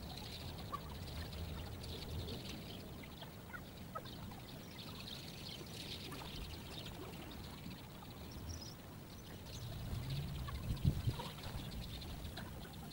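Lakeside outdoor ambience: a steady low rumble with faint, busy high chirping over it, and a short cluster of low thumps about ten to eleven seconds in.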